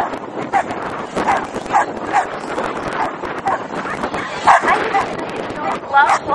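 Several dogs barking and yipping in short, repeated calls over a steady hubbub of voices, the loudest bark about four and a half seconds in.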